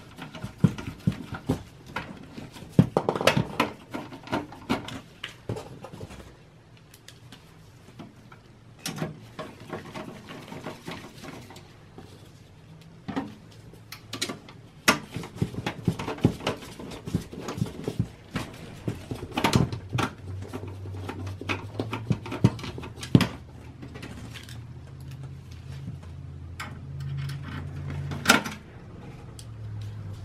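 Screwdriver driving screws into a steel PC case to fasten a power supply in place: irregular small metallic clicks, taps and scrapes, with a faint low hum in the second half.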